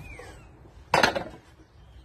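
A man's short, sharp breath about a second in, taken while he holds a heavy barbell at the top of a deadlift between reps.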